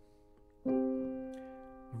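A single right-hand piano chord struck about two-thirds of a second in, held under the sustain pedal and fading away evenly. It is the fourth-beat chord of a chord-inversion study.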